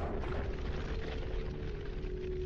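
A heavy hammer blow on a stone floor right at the start, followed by a low, noisy rumble, with a steady music drone held underneath.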